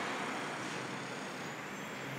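Steady, low street background of distant road traffic, easing slightly.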